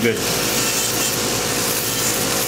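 Electric podiatry nail drill running, its rotary burr grinding down a thick toenail: a steady, even whirring hiss with a faint held tone under it.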